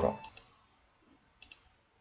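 Computer mouse clicks: a pair of quick, sharp clicks about a second and a half in, with fainter clicks just after the start, over faint room tone.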